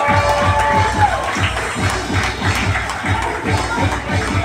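Music with a fast, steady drum beat playing for a fire-dance show, over crowd noise, with a long held shout that falls away at its end in the first second.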